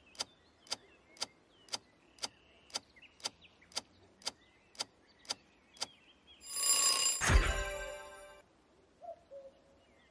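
Quiz countdown timer sound effect: a clock ticking about twice a second for about six seconds, then a ringing alarm bell as time runs out, fading away over about two seconds.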